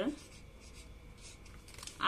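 Felt-tip whiteboard marker writing on chart paper: faint, short scratchy strokes as the letters are drawn.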